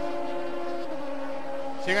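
A steady engine drone, its pitch dropping slightly about a second in.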